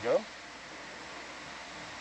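One spoken word, then a steady, even background hiss with no distinct event in it.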